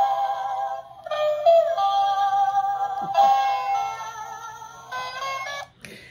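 A short electronic tune of steady, held synthesizer-like notes, played in three phrases with brief breaks about a second in and about three seconds in.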